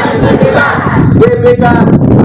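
A group of men and women shouting a slogan together in unison as a cheer, with one syllable drawn out in the second half.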